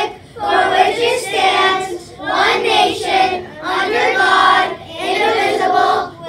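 A group of children reciting the Pledge of Allegiance together in unison, phrase by phrase, with short pauses for breath between phrases.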